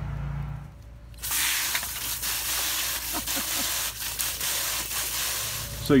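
Water spraying from a garden hose nozzle into a bucket of compost, filling it to brew compost tea: a steady hiss of spray and splashing that starts about a second in.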